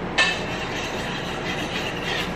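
A metal mixing bowl knocks once, then clatters and scrapes as a whisk is moved in the alfredo sauce inside it.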